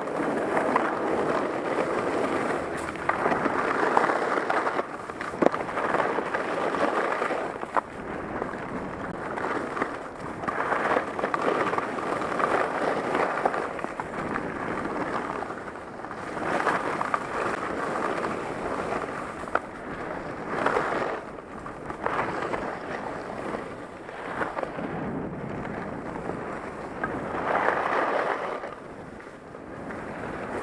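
Skis carving and scraping over groomed snow, with wind on the microphone: a steady rushing hiss that swells and eases every few seconds through the turns, with a few sharp clicks.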